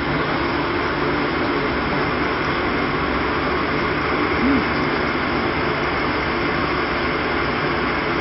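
Steady drone and hiss of a ship's machinery and ventilation heard inside an accommodation room, unchanging in level.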